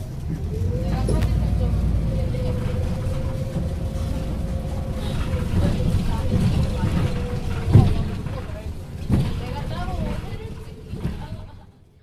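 City bus driving, heard from inside the passenger cabin: a low engine and road rumble with a steady whining tone over it. There is a sharp knock about two-thirds of the way through and another thump a little later, and the sound fades out near the end.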